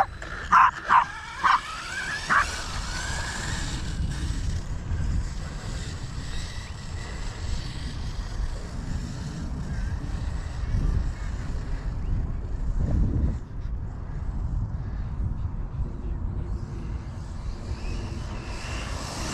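A small dog barking four times in quick succession in the first couple of seconds, followed by a low, steady rumble.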